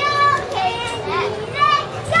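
High-pitched, child-like voices calling out in a quick run of short calls that rise and fall in pitch.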